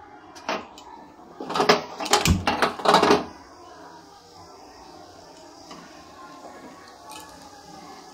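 Spring rolls deep-frying in hot oil in a deep pan: a burst of loud crackling and knocks about one and a half to three seconds in as a roll goes into the oil, then a steady quiet sizzle.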